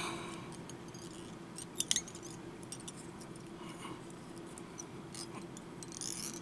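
Small clicks and light handling noises of fingers working fly-tying materials on the hook in a vise, over a steady faint hum; a sharp double click a little under two seconds in is the loudest.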